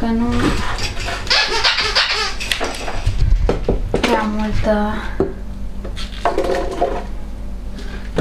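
A metal ladle clinking and scraping against a large cooking pot as boiled rosehips are scooped out and dropped into a plastic blender jug, with short clicks and knocks. Voices talk briefly in between.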